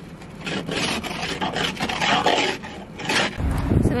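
Plastic ice scraper scraping freezing-rain ice off a car windshield, heard from inside the car, in repeated rasping strokes. A low rumble near the end.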